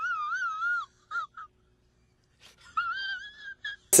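A person's high-pitched whimpering whine: a wavering cry in the first second, a couple of short squeaks, then a second cry about three seconds in that slides up and holds.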